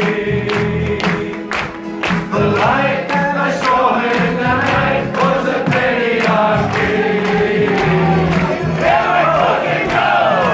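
A man singing into a microphone with a roomful of people singing along, and hand claps keeping time at about two a second.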